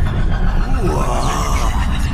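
Sci-fi style intro sound design: a loud, deep rumble with swooping electronic tones that rise and fall around the middle.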